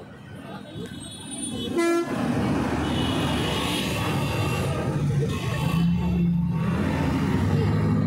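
A brief horn toot about two seconds in, then a steady, louder noisy din with low droning tones.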